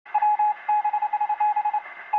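Morse code beeping: a single tone keyed rapidly in a pattern of long and short beeps, over a faint steady hum.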